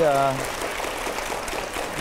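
Studio audience applauding: a dense, steady patter of many hands clapping.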